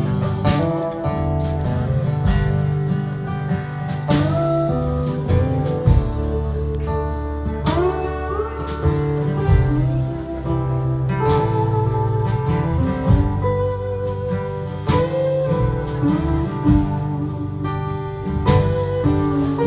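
Live band playing an instrumental break on guitars and bass, with a lead guitar line whose notes slide and bend in pitch.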